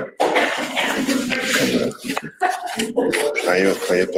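Indistinct speech: people talking in a room, too unclear for the words to be made out.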